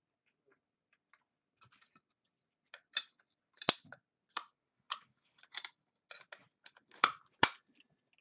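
Clear plastic magnetic card holder (a "one touch") being handled and closed: a run of small plastic clicks and taps, with a few sharper snaps, the loudest near the end.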